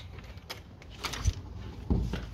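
A front door's lever handle and latch being worked, with a few light clicks and then a low thump near the end as the door is pushed open.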